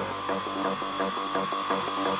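Acidcore electronic music in a breakdown with the kick drum dropped out: a rapid, even pattern of synth clicks over a held high tone.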